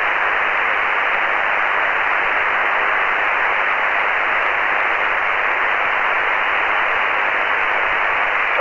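Shortwave radio receiver hiss: a steady band noise through the radio's narrow voice filter, with no station coming through.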